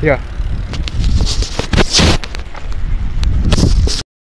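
Wind buffeting a phone's microphone with irregular rattles and bumps, the sound of riding a bicycle while filming.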